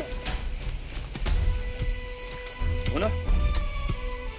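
Background score of steady held tones over a low rumble, with two sharp clicks in the first half. A short voice sound comes about three seconds in.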